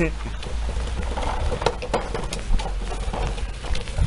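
A child's feet and a plastic ride-on toy crunching and knocking over a thin layer of fresh snow in scattered short steps, over a low, steady rumble.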